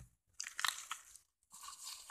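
Crinkling and rustling of paper and padded mailer packaging being handled, in two short bursts: one about half a second in, another starting about a second and a half in.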